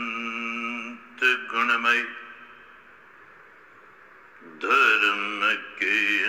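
Man chanting in a slow, drawn-out melody with long held, wavering notes. The chant breaks off a little after two seconds in and resumes about two seconds later.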